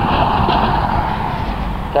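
A limousine driving past on the road, a steady rush of tyre and engine noise, with wind rumbling on the microphone.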